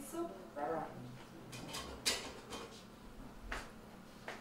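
A few short, sharp clinks and knocks of a utensil against a cooking pot on the stove, the loudest about two seconds in.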